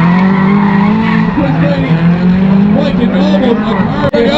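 Two drift cars running side by side in a tandem drift, engines held at high revs while the rear tyres skid and squeal sideways. The engine note holds steady, then wavers in the second half.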